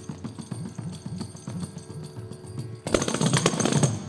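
Carnatic hand percussion played in fast, dense strokes on small hand-held drums, growing into a louder, fuller flurry about three seconds in.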